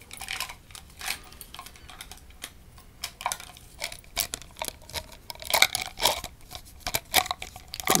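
Irregular close-up crackling and crinkling handling sounds at the microphone, a scatter of small clicks that is busiest about five and a half to six and a half seconds in.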